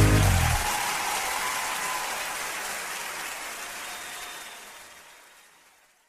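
A country band's closing chord cuts off at the start, followed by concert-crowd applause that fades away steadily over about five seconds.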